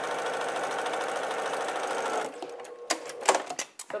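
Baby Lock Accomplish sewing machine stitching a seam at a steady fast rate, stopping a little over two seconds in. A few sharp clicks follow near the end.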